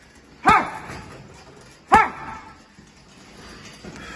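Two gloved power punches landing on a heavy punching bag about a second and a half apart, each with a short, sharp shouted "Ha!" from the boxer.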